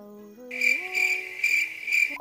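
Crickets chirping: a steady high trill pulsing about four times a second. It starts about half a second in and cuts off abruptly as a song comes in. A soft rising melody plays underneath.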